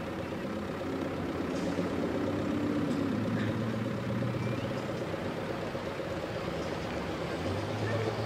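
Vehicle engines running slowly with a steady hum that swells around the middle and again near the end, mixed with the indistinct voices of a crowd on foot.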